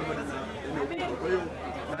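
Speech only: people talking, with voices chattering in the background.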